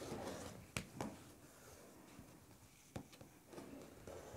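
Olfa 45 mm rotary cutter rolling through layered cotton fabric along an acrylic quilting ruler: a soft scraping rasp that fades after about a second, then a few light sharp clicks of the ruler and cutter being handled.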